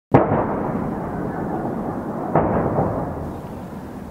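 Two explosions of shelling: a sudden loud blast right at the start and a second one about two and a half seconds in, each trailing off in a long low rumble.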